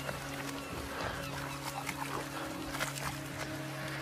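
A soft held chord of background film music, steady throughout, with faint irregular clicks and rustles beneath it.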